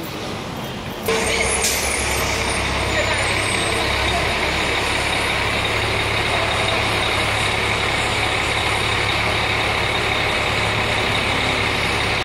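Heavy diesel construction machinery running: a steady low drone with hiss above it, which comes in suddenly about a second in and then holds level.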